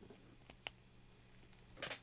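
Near silence with two faint, short clicks about half a second in, from a steel split ring and the swimbait's metal belly ring being handled.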